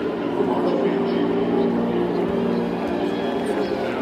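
A marching band's brass holding long, steady notes together as a sustained chord, over the hum of a stadium.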